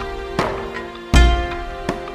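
Background music in a Japanese traditional style: plucked string notes that ring and fade, with a deep drum hit about a second in.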